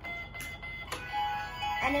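Electronic keypad piggy-bank safe toy playing a tinny electronic tune from its small speaker as it is unlocked, with two light clicks in the first second.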